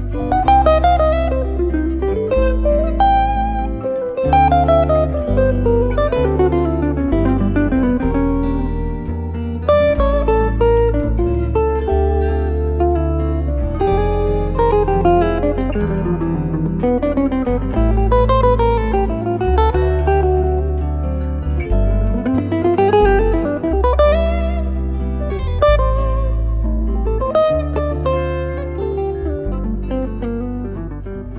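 Live jazz guitar duo of an archtop hollow-body electric guitar and a solid-body electric guitar. Fast single-note runs climb and fall over low bass notes that change about once a second.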